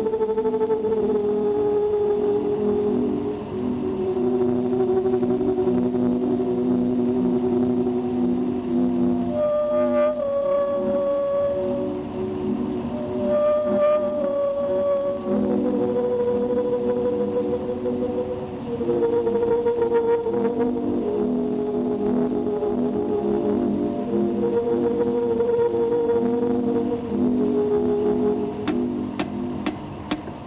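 Slow film-score music of long held, brass-like notes: a low chord that shifts to a new pitch every few seconds. Higher notes enter briefly about ten and fourteen seconds in.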